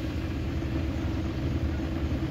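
Steady low rumble of a car heard from inside its cabin while it is moving and swaying.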